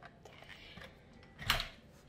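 Light plastic clicks and handling knocks from a toy stick vacuum, with one sharper knock about one and a half seconds in.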